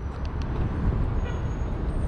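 Steady low rumble and hiss of background vehicle traffic.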